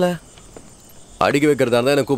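Crickets chirping steadily in the background. A voice trails off just after the start and another voice comes in a little past halfway.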